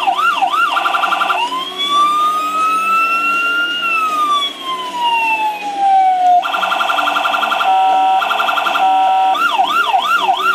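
Electronic police-style siren on a toy sheriff's jeep, cycling through its tones. It starts with a fast yelp, breaks into a quick warble, then gives one slow wail that rises for about two seconds and falls away. After that comes a choppy alternating two-tone pattern, and the fast yelp returns near the end.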